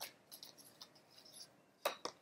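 Faint rustling and small clicks of tarot cards being handled as a card is drawn from the deck, with a sharper click near the end.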